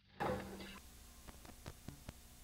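Near silence broken about a quarter second in as a videotape recording's sound cuts in: a brief loud burst of noise with a low hum, then steady tape hiss with four light clicks in the second half.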